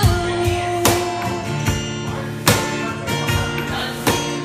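Live acoustic guitar strumming with cajón beats between sung lines of a country song, with sharp cajón strikes standing out about one and two and a half seconds in.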